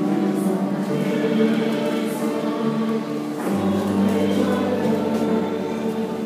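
A church choir singing a hymn, many voices together holding long notes. A low sustained note joins about halfway through.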